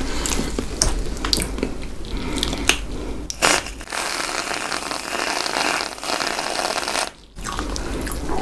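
Close-miked chewing and mouth clicks, then an aerosol can of whipped cream spraying onto a strawberry: a steady hiss of about three seconds that cuts off abruptly near the end.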